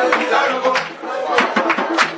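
Live group music: several voices singing and calling, with sharp percussive hits coming irregularly about every half second.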